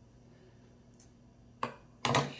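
Near silence, then a single sharp snip of hand pruning snips cutting the bottom leaf off a tomato cutting, near the end.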